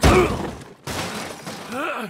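Cartoon crash effect: a body slams into a billboard with one loud, crunching impact at the start that dies away within about half a second. Near the end comes a short vocal grunt.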